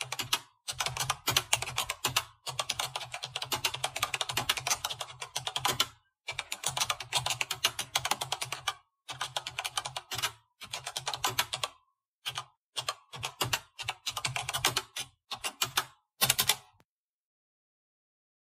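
Computer keyboard typing sound effect: quick runs of keystroke clicks in short bursts with brief pauses, stopping near the end.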